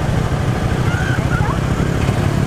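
Motorbike engine running as a steady low rumble.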